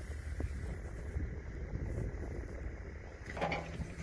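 Tractor engine running at idle, a steady low rumble, with a few faint clicks over it.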